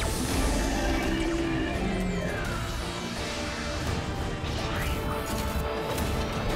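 Dramatic score for a cartoon robot transformation, with a sudden crashing burst at the start and falling whooshing sound effects about two seconds in.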